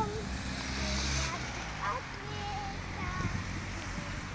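A young child's voice making short, soft high-pitched vocal sounds with no clear words. A low rumble runs under the first second or so.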